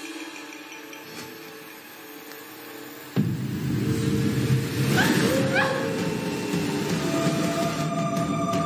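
Dramatic soundtrack music: a soft held chord that breaks about three seconds in into a sudden loud, dense swell, with two short rising sweeps near the middle.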